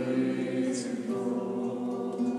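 Hymn singing: a group of voices on slow, held notes that move from one pitch to the next.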